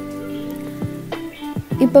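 Water with tea powder boiling hard in an unglazed clay pot, a patter of bubbling and irregular sharp pops, over soft background music.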